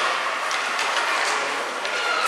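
Ice rink noise during a hockey game: a steady mix of skate blades scraping the ice and arena hubbub, with a few light clicks of sticks and puck.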